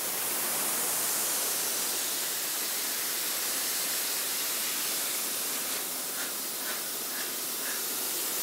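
Steady hiss from a CNC plasma cutting machine, with a few faint ticks near the end.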